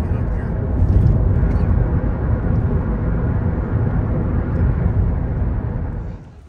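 Steady road and engine rumble inside a car cruising at highway speed, mostly low-pitched tyre and wind noise, which cuts off suddenly at the end.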